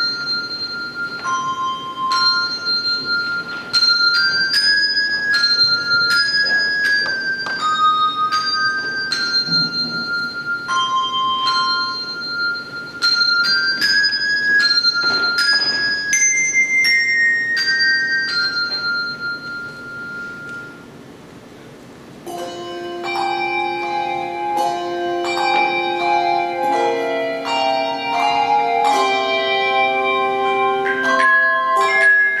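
A handbell choir playing, with no singing. A melody of single high bell notes rings out one after another, each left to ring on. After a soft lull about two-thirds of the way through, lower bells come in with held chords.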